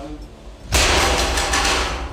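A metal dish thrown down onto the tiled floor, hitting with a loud sudden crash about a second in and clattering and rattling on as it settles: a loud noise made to test whether a dog that may be going deaf reacts.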